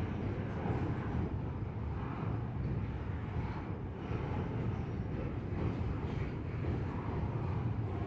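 Double-stack intermodal freight train rolling across a steel truss railway bridge: a steady low rumble of the cars and wheels that holds throughout.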